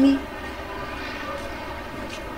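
A steady low background hum with faint even tones running through it. The tail of a woman's spoken word is heard at the very start.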